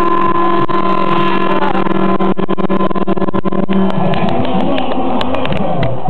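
A Medmar ferry's horn sounding one long steady blast made of several tones together, as a ship's salute to the boats in the harbour; it cuts off about four seconds in.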